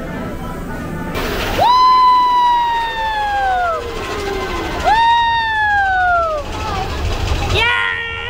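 Riders on a mine-train roller coaster give two long whoops, each falling in pitch, just after a short hiss of air as the train pulls out of the station.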